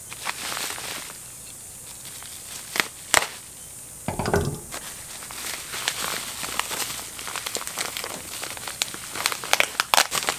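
Plastic bubble wrap crinkling and rustling as a package is cut open and unwrapped by hand, with a couple of sharper snaps about three seconds in and a denser crackle of plastic in the second half.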